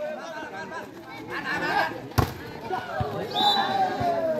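Spectators chattering and calling out around a volleyball rally. A single sharp smack of the volleyball is heard about two seconds in, then a softer knock about a second later.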